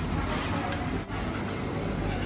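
Steady background din of a busy restaurant, a dense even rumble and hiss, with a brief drop about a second in.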